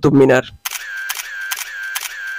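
A camera shutter sound effect firing in a rapid burst of repeated clicks over a held whirring tone. It is thin and high-pitched and starts just after a voice breaks off about half a second in.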